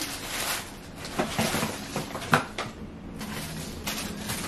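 Rustling and handling of packaged baby clothes as items are picked up and sorted, with a few light knocks and clicks, the sharpest a little past two seconds in.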